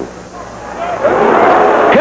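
Football stadium crowd in an old match broadcast recording, its noise swelling into a loud roar about a second in as an attack closes on the goal.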